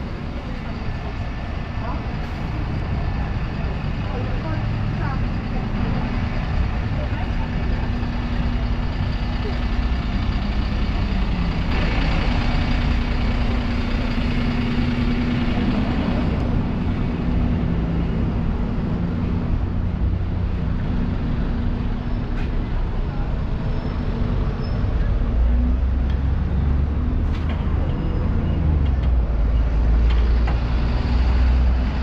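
Busy town-centre street: the engines of red double-decker buses running close by over general traffic, with people talking nearby. A deep engine rumble grows louder near the end as a bus comes closer.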